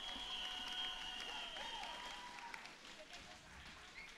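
Studio audience applauding, with scattered voices, gradually fading down.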